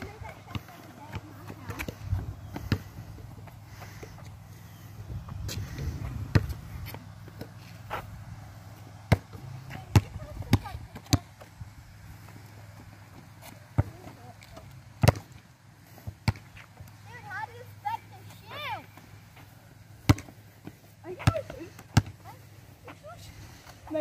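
Basketball bouncing on an outdoor court: a string of sharp thuds at irregular intervals, some close together, others seconds apart.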